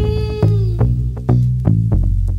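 Mid-1990s house music playing from a vinyl DJ mix: a bass line whose notes change about every half second under regular drum hits, with a held, wavering lead note that slides down and stops a little under a second in.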